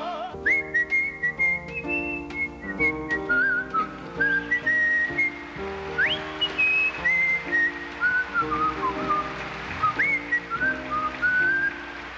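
A man whistling a melody into a microphone over instrumental accompaniment that repeats a chord pattern. The whistled line sweeps sharply upward about six seconds in and again near ten seconds.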